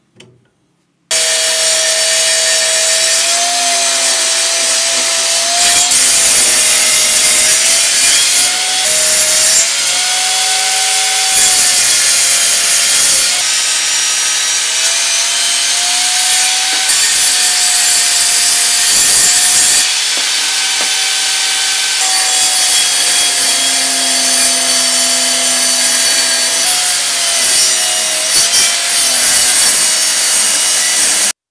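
Bench-top table saw cutting a block of bubinga hardwood, starting about a second in: a steady blade whine that dips in pitch each time the blade takes the wood, over loud cutting noise, in several passes with abrupt breaks.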